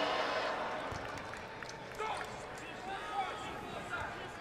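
Basketball arena crowd noise during a free throw: a low murmur with scattered voices and a dull knock about a second in.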